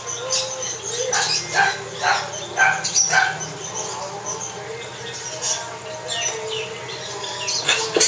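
Hand-fed brown-throated parakeet chick giving a quick run of short begging calls as it takes food from a spoon, with a few more calls later and near the end.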